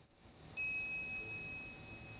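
A single high chime struck about half a second in, one clear tone ringing on and slowly fading: the audio cue that marks an additional note to the text.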